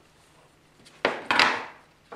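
A steel combination square set down on a plywood sheet: two sharp knocks about a second in, a quarter second apart, each dying away quickly.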